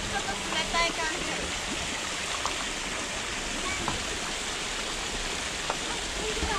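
Water pouring steadily from a metal spout and splashing into a stone basin.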